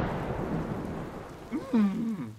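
Cartoon sound effect of steady pouring rain with a low thunder rumble, slowly easing off. About a second and a half in, a short wavering vocal groan sounds over the rain.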